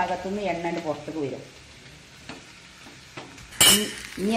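Vegetables frying in hot oil in a pan and being stirred with a spatula. After a quiet stretch with a few faint clicks, a short, loud burst of sizzle comes about three and a half seconds in.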